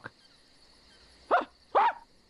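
Two short, sharp yelping calls, like barks, about half a second apart, starting about a second and a half in.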